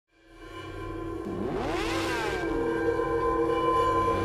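Logo-intro sound design: sustained droning tones fade in, and about a second and a half in, a sweep rises sharply and then falls away.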